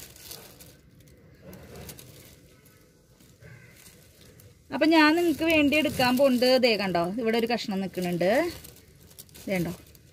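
About four and a half seconds of near-quiet with faint handling noise, then a woman speaking for about four seconds.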